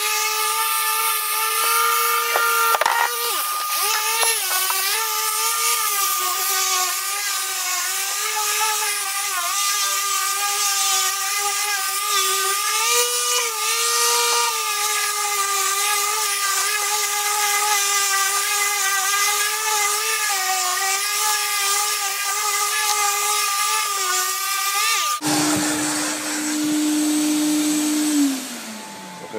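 Dual-action (random orbital) sander running on an MDF panel face, its whine wavering slightly as it is pressed and moved over the board. Near the end the sound changes to a single steadier, lower tone.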